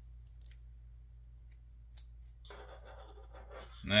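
Faint scattered clicks and scraping as pieces of a 3D T-Rex puzzle are pushed and fitted together by hand, the jaw being worked into place on the head.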